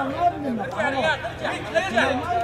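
Men's voices chattering, several talking over one another, with no other distinct sound standing out.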